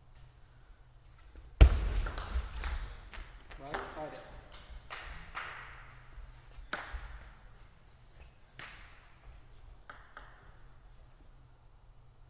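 Table tennis ball clicking sharply as it is hit and bounces on the table and floor, starting with a sudden loud knock about a second and a half in, followed by a run of quick clicks and then scattered single clicks. A short shout or call comes near four seconds in.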